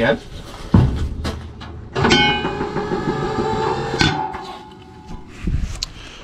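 The steel discharge chute door of a Billy Goat Z-3000 ride-on leaf blower being closed: a clunk about a second in, then a squealing metal-on-metal slide for about two seconds that ends in a sharp clank, and a softer thump near the end.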